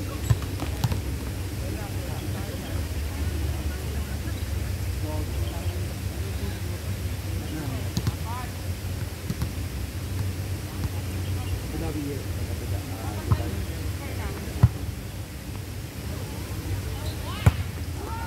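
Volleyball being struck by players' hands: four sharp smacks, one just after the start and three in the last five seconds. Players' voices carry faintly over a steady low rumble.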